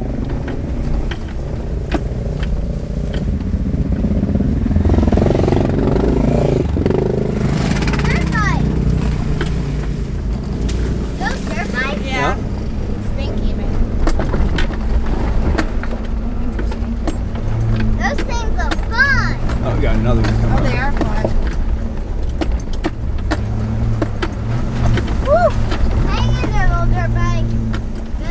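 2003 Land Rover Discovery 2's V8 running at a low, steady crawl over a rough dirt trail, heard inside the cabin, with constant clicks and knocks of the body and its contents rattling over the bumps.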